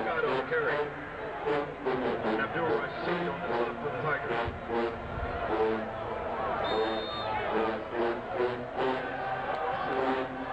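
HBCU marching band playing in the stands: sustained brass notes over drums keeping a steady beat of about two strokes a second, with crowd voices mixed in.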